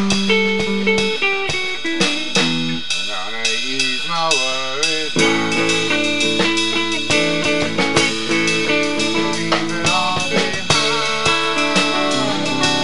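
A band playing an instrumental passage on electric guitars over a drum kit, with notes bending and wavering about three to five seconds in.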